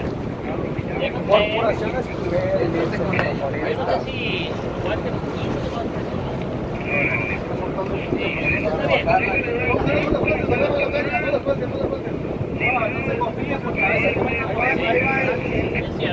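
A boat's engine runs under wind buffeting the microphone, with indistinct voices talking on deck.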